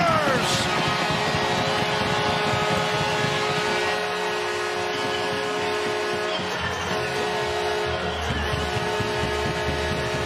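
Arena goal horn whose pitch drops away as it dies in the first half-second, then music played over the arena sound system above a cheering crowd.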